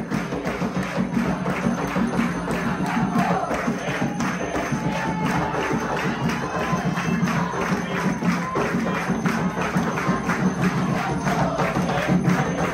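Umbanda ritual music: a fast, steady percussion beat with hand clapping and voices singing a ponto over it.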